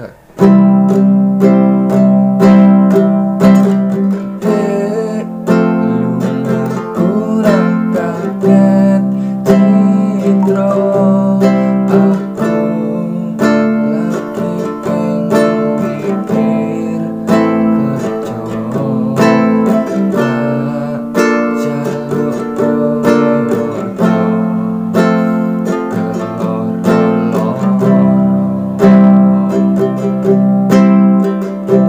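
Small nylon-string acoustic guitar strummed steadily in a down-down-up-down-up-down pattern through the chorus chords C, G, Am, Em, F, C, G, changing chord every couple of seconds.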